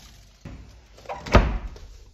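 A built-in fridge's cabinet door being shut, closing with a solid thud about one and a half seconds in, preceded by a lighter knock about half a second in.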